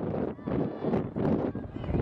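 Open-air field sound of a lacrosse game in play: scattered voices calling out across the field, over irregular knocks and running noise.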